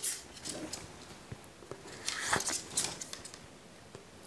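Carbon arrow shafts being slid into the drilled holes of a foam yoga-block insert in a leather waiter's-holster quiver, with a few faint scrapes and light clicks.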